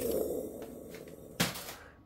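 Packing paper being handled and set aside: a low rustle that fades out, with a single sharp knock about one and a half seconds in.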